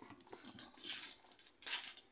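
Spoon mixing spaghetti squash in a plastic tub: a few faint, short scraping sounds.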